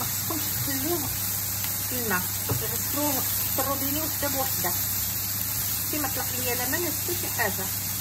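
Sliced mushrooms sizzling with a steady hiss in an oiled frying pan as they are stirred with a wooden spoon, with a voice talking over it.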